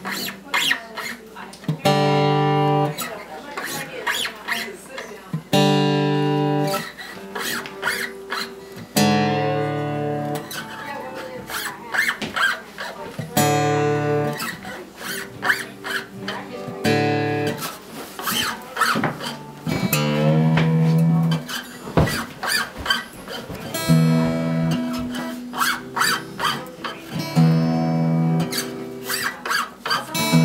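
New acoustic guitar strings plucked and strummed again and again as they are stretched and brought back up to pitch, each note ringing and dying away, some sliding in pitch.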